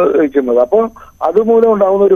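Speech only: a man talking over a telephone line, the sound narrow and thin.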